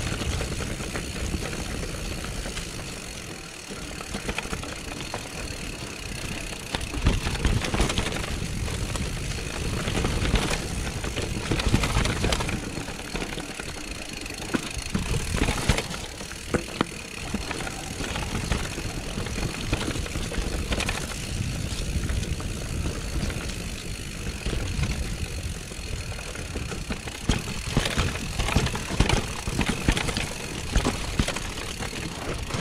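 Mountain bike rolling downhill on a stony dirt singletrack: a steady low rush of wind on the camera's microphone and tyre noise, with the bike rattling and knocking over rocks and roots, louder jolts several times.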